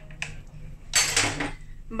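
Kitchenware clatter: a couple of light knocks, then a louder clatter lasting about half a second, about a second in, as a ceramic mug is put down on the worktop.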